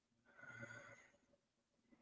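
Near silence: room tone, with one faint, short sound a little under half a second in.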